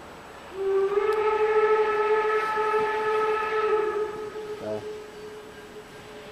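Whistle of a 750 mm narrow-gauge steam locomotive: one long steady blast starting about half a second in, held for about three and a half seconds, then trailing off quieter.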